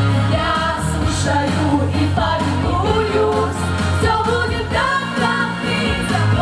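Female vocal group singing a pop song together into microphones over instrumental accompaniment with a steady bass line.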